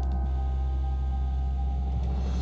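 Background music: a sustained low chord held steady, with no beat or melody moving.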